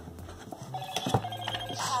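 Moto Z2 Play's boot-up chime playing from its speaker, a short electronic melody of steady tones that starts about half a second in.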